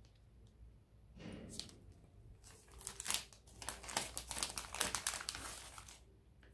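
A chocolate bar's wrapper being torn open and crinkled by hand: a soft rustle about a second in, then a dense run of crackling for a few seconds before it dies away near the end.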